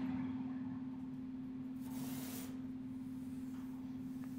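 A faint steady low hum, with a short hissing rustle about two seconds in.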